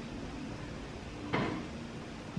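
A single short knock about one and a half seconds in, over a low steady hum.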